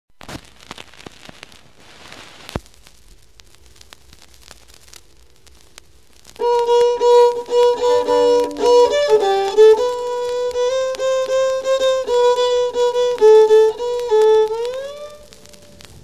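A lone violin plays a short phrase of held notes and slides up in pitch at the end. Before it, about six seconds of faint hiss and crackle from a vinyl record, with one sharp click.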